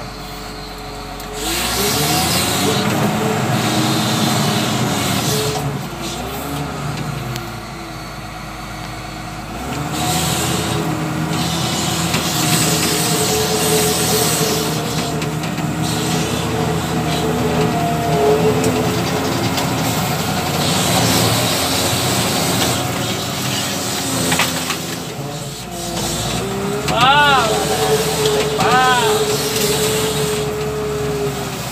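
Diesel engine of a W130 wheel loader running from inside the cab, revving up and easing off as the machine works the bucket through brush. Near the end come two short whines that rise and fall.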